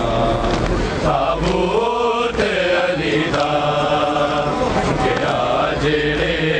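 A man chanting a noha, a Shia mourning lament, in long held lines whose pitch bends up and down, loud and continuous.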